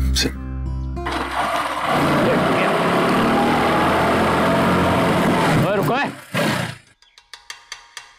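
Motorcycle engine running as the bike rides along, loud and steady for about six seconds before cutting off near the end.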